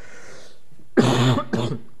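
A man coughing twice into a lectern microphone about a second in, the two coughs about half a second apart, the first the louder.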